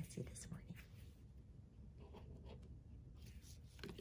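Faint rubbing and light ticks of a glue stick being worked across a small paper cut-out, with a brief murmur of voice at the start and end.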